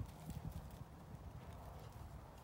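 A retriever's paws thudding on grass in a quick galloping rhythm as it runs off, the footfalls strongest right at the start and fading, over a low steady rumble.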